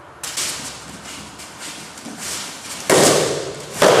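Training staffs striking in a fast sparring exchange: a sharp knock early on, a few lighter knocks, then a loud clack with a short ring about three seconds in and another near the end.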